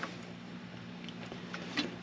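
A few faint light ticks of a meter's test probe pressed and shifted on a car battery terminal, the clearest near the end, over a steady low hum.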